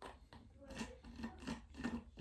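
Faint sipping through a straw from a clear plastic cup with little drink left in it: a quick run of short sucking noises, several a second.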